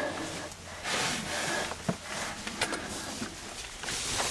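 Scuffing and rustling of someone crawling over dirt and debris in a cramped tunnel, with a few small knocks and noisy breaths.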